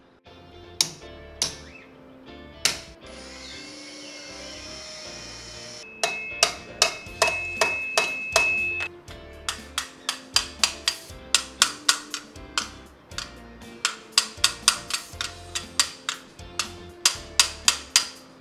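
Sharp metal-on-metal hammer blows on a chisel cutting the rivets off a steel motorcycle gear, over background music. There are a few separate strikes at first, then from about six seconds in a steady run of about two to three blows a second, each with a short ring.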